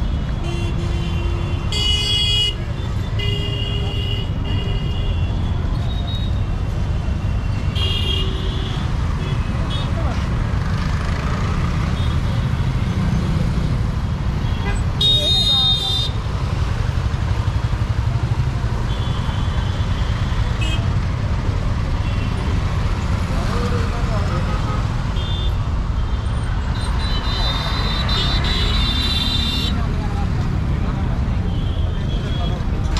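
Busy road traffic: a steady low rumble with a crowd of voices, cut by repeated short, high-pitched horn toots, the longest near the middle and near the end.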